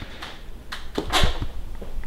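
A few soft clicks and knocks over quiet room noise, with a low thump a little past the middle.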